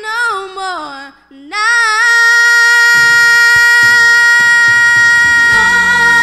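Three girls singing a gospel song into microphones: a phrase with wavering pitch, a short break about a second in, then one long, steady held note from about a second and a half.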